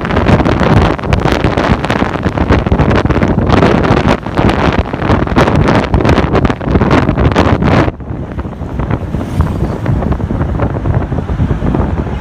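Wind buffeting the microphone of a camera riding in a moving vehicle, a loud gusty rush that drops abruptly to a quieter, duller rush about eight seconds in.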